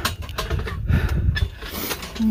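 Rubbing and crackling noise close to a phone's microphone over a low rumble, as the phone is handled and turned. A few short sharp crackles come through irregularly.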